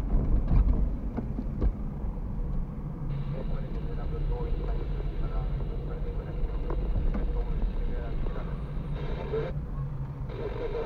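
Steady low rumble of a car's engine and tyres heard from inside the cabin, with a few sharp knocks in the first two seconds.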